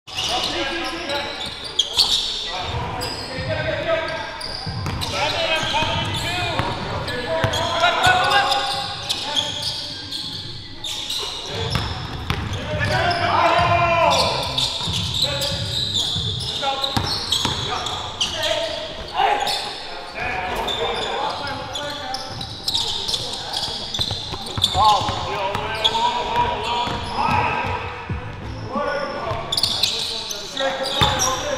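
Live sound of an indoor basketball game: a basketball bouncing on the hardwood court, with players' indistinct shouts echoing in the gym.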